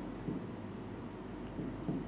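Stylus writing on an interactive board: faint scratching and tapping of the pen tip on the board surface as letters are drawn.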